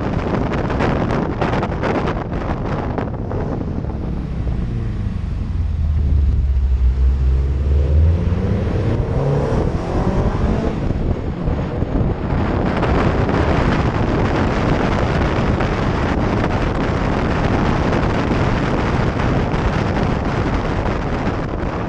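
Wind rushing and buffeting over the microphone of a bonnet-mounted camera on a moving car. About halfway through, a car engine comes through as a low drone that rises in pitch as it accelerates, then the wind noise takes over again.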